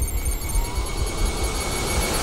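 Trailer tension sound design: a loud, steady low rumble under a hiss, with thin high-pitched tones held across it.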